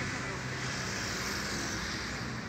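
Steady outdoor street ambience: a continuous hum of road traffic with faint background voices.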